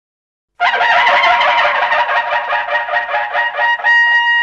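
Logo sting music. After a short silence it starts about half a second in as a loud, shimmering, rapidly fluttering pitched texture, and a steady held note comes in right at the end.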